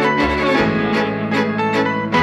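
Live instrumental music led by a bowed violin, over held low notes and a steady pulse of short notes.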